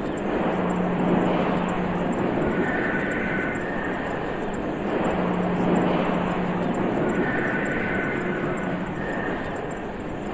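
Ambient drone music made from processed car-factory field recordings: a dense wash of machine-like noise with a low hum, and higher tones that come and go in a slow cycle of about five seconds.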